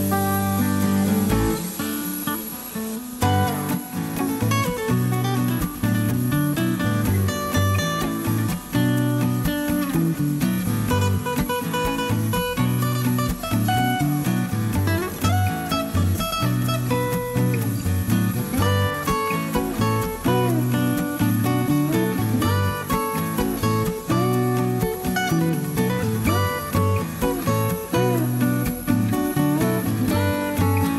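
Instrumental background music led by guitar, a steady run of short notes with a regular rhythm.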